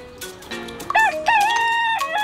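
A rooster crowing, starting about a second in: two short rising notes, then a long held note.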